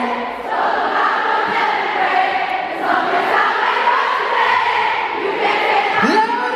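Arena crowd singing a chorus together, thousands of voices on one wavering tune. The band's bass drops out as it begins, leaving the crowd mostly unaccompanied.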